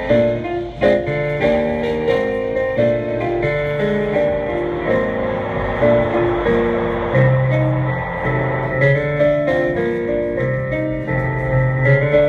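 Solo keyboard played in a piano voice: chords over held low bass notes, the notes changing every fraction of a second.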